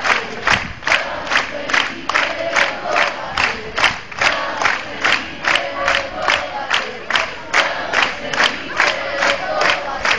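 Concert crowd clapping in a steady rhythm, about two to three claps a second, with many voices chanting or singing along in held notes between the claps.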